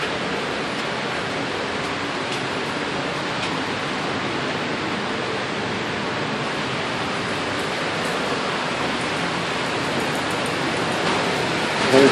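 Steady, even rushing noise of air-moving machinery, growing slightly louder near the end. The likely source is the air filtration running during lead abatement.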